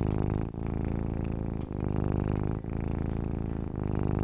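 A cat purring, a rapid rumbling pulse with a short break about once a second as it breathes in and out.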